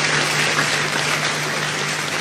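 Audience applauding steadily, with a steady low hum underneath.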